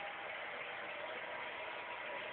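Steady hiss of background noise from a television broadcast played in a room, with no distinct sounds.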